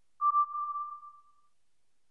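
A single electronic tone that starts suddenly and fades away over about a second.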